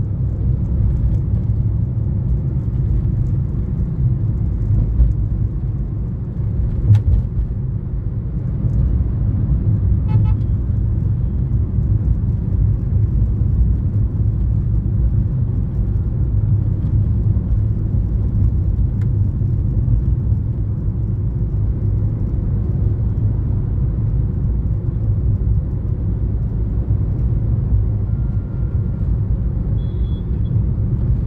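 Road and engine noise inside a moving car's cabin: a steady low rumble at speed, with one sharp click about seven seconds in.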